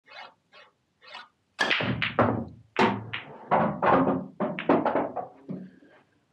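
Break-off shot on an English eight-ball pool table. A few faint taps come first, then about one and a half seconds in the cue ball is struck hard into the rack, followed by some four seconds of balls clacking against one another and the cushions as the pack scatters.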